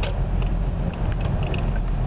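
Steady low rumble of a car on the move, heard from inside the cabin: engine and road noise with a few faint clicks.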